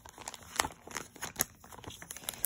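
Clear plastic packaging crinkling as it is handled, a run of irregular crackles with two louder ones, about half a second and a second and a half in.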